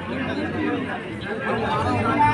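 Several people talking and calling out at once in overlapping chatter, over a steady low hum.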